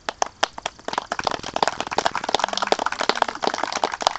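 A small group of people applauding: a few scattered claps at first, then dense, steady clapping from about a second in.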